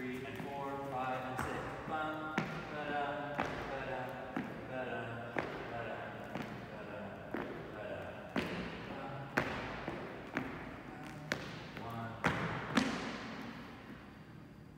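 A voice singing or vocalising a tune with no clear words, over sharp knocks about once a second from dancers' steps on a hardwood floor, echoing in a large hall; the last two knocks near the end are the loudest.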